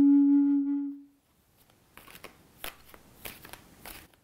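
A held flute note fades out within the first second. From about two seconds in, a tarot deck is shuffled in the hands: short, uneven card clicks and rustles, much quieter than the flute.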